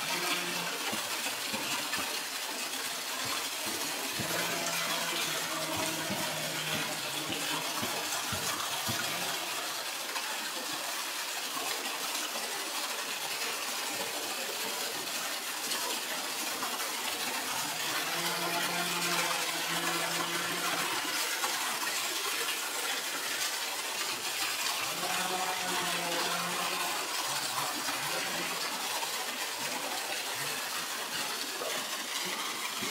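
Water gushing steadily from an inlet jet into a shallow pool that is still being filled, a constant splashing rush.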